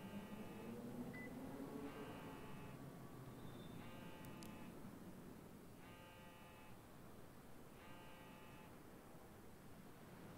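Mobile phone ringing: a faint, buzzy electronic tone in short pulses about every two seconds, five rings in all.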